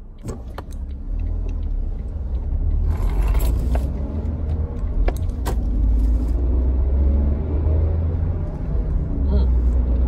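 Car under way, heard from inside the cabin: a steady low engine and road rumble that swells up about a second in and holds, with a few sharp clicks and knocks along the way.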